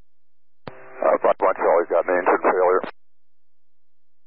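Air traffic control radio transmission: a click and a brief steady tone, then about two seconds of thin, narrow-band radio speech that cuts off abruptly.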